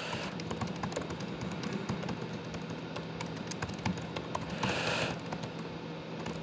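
Typing on a laptop keyboard: a quick, irregular run of key clicks, with a short hiss about five seconds in.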